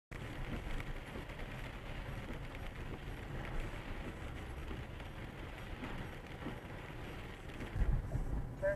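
Car driving on a wet road, heard from inside the cabin: steady tyre and road noise with rain on the windshield and a few light ticks.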